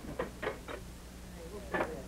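A few short, sharp noises, the loudest near the end, with faint brief voice sounds among them, over the steady low hum of an early sound-film soundtrack.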